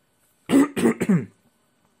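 A person clearing their throat: two short voiced coughs in quick succession, each falling in pitch.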